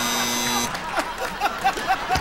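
A steady electric buzz that cuts off suddenly less than a second in, followed by someone chuckling in quick, evenly spaced 'heh-heh' sounds.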